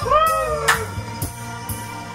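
Karaoke backing music with a steady beat, and a single wailing sung note that bends up and then down in pitch over the first second.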